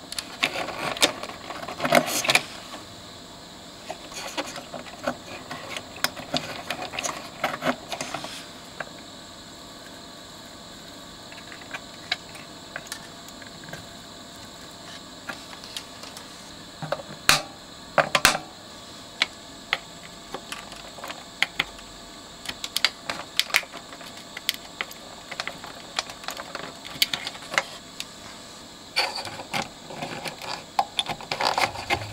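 Scattered clicks and knocks of tools and a circuit board being handled while old capacitors are changed, over a steady faint hiss. A cluster of clicks comes about two seconds in, and the loudest pair of sharp clicks comes a little past halfway.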